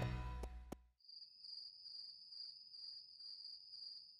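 The last of a children's song fades out in the first second. Then crickets chirp faintly in a steady high trill that pulses a few times a second, the usual cartoon cue for night-time and sleep.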